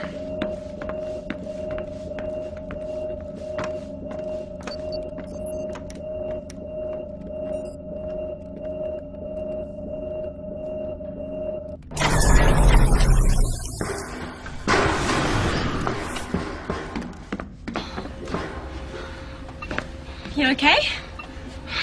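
Film soundtrack: a steady humming drone with faint scattered clicks, then about twelve seconds in a sudden loud burst of noise with a deep rumble lasting about two seconds, followed by a few more seconds of rushing noise.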